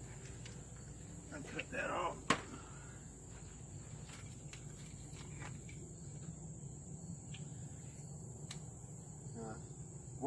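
Insects chirring in a steady, high, even drone, with a single sharp knock a little over two seconds in and a few faint ticks scattered after it.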